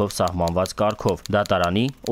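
Speech only: a voice reading a notice aloud in Armenian.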